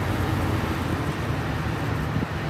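Steady road and engine noise heard from inside a moving car: a low rumble under an even hiss.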